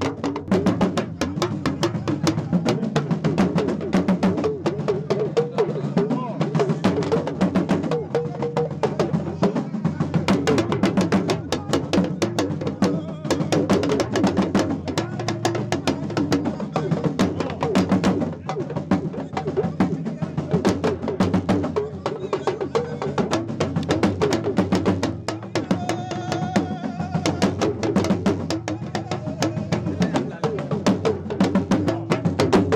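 Rapid drumming, with many quick strokes throughout, along with voices from a crowd.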